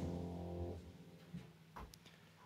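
Grand piano's final chord sustaining, then cut off abruptly under a second in as the dampers come down. A couple of faint knocks follow.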